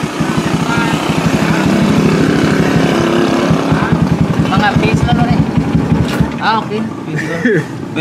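A small vehicle engine idling with a steady low pulse, which drops away about six seconds in. Brief voices can be heard over it.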